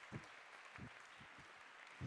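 Near silence: room tone with a few faint, soft low thumps.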